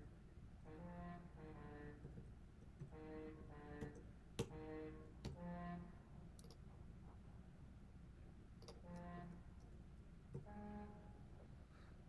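Sibelius notation software's sampled trombone sound playing back short chords, one to a few at a time, as notes are entered or selected in the trombone section, with sharp computer mouse and keyboard clicks between.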